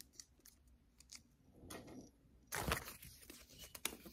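Soft rustling and crinkling of a folded paper sticky note being picked up and unfolded, loudest about two and a half seconds in.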